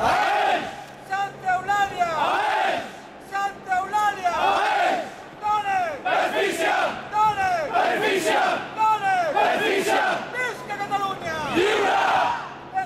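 Large crowd chanting a slogan in unison, the chant repeating about every two seconds as three short shouted syllables followed by a longer drawn-out one.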